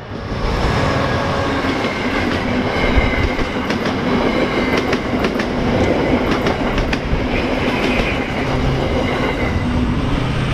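Amtrak passenger train passing close by at speed: the diesel locomotive, then a rush of stainless-steel passenger cars, with wheels clicking sharply over rail joints through the middle.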